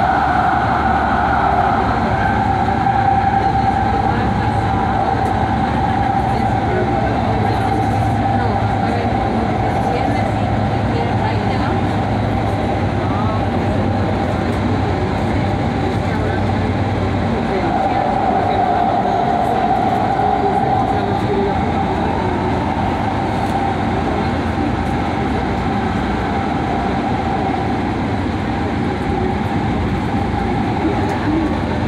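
Inside a Metro C Line light-rail car running at speed: a steady rolling rumble of the wheels on the track. A high, steady whine rises near the start and again a little past halfway, and a low hum under the rumble drops away about halfway through.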